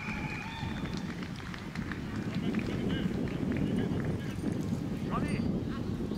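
Children's voices calling, with a few high shouts and one rising call about five seconds in, over a steady low rumble.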